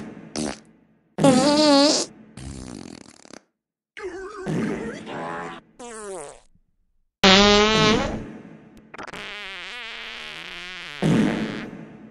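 Dubbed-in fart sound effects: a string of about seven blasts of varying length, several with a wobbling pitch, the longest near the middle.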